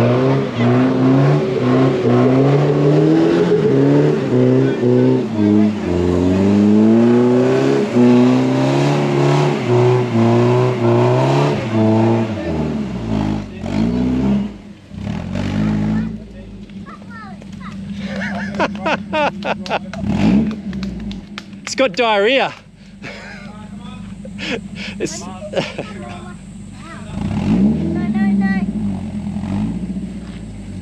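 Toyota Hilux 4x4 engine revving up and down under load for about twelve seconds as it crawls up a muddy, rutted climb, then settling to a steady idle after about sixteen seconds. Voices call out over the idle.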